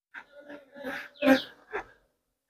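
A man's voice uttering a few short, indistinct syllables.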